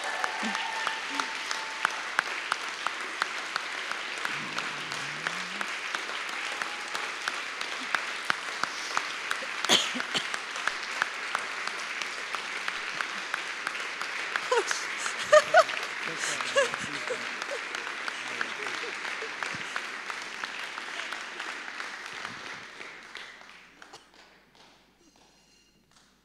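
Audience applauding steadily, with a few voices heard over the clapping about halfway through; the applause dies away near the end.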